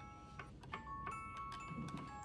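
Soft glockenspiel-style background music: light struck notes at several different pitches, a few each second, each ringing on after it is struck.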